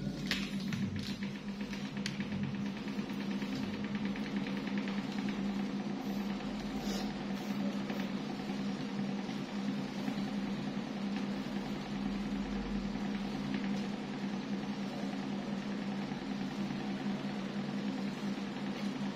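Electric stand fan with modified blades running: a steady motor hum at one constant pitch over the rush of moving air.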